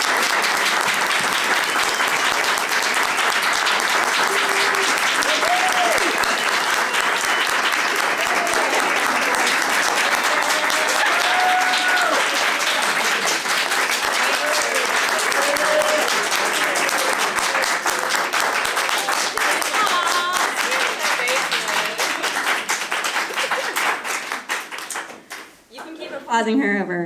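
An audience applauding: long, steady, dense clapping, with a few voices calling out over it, dying away near the end.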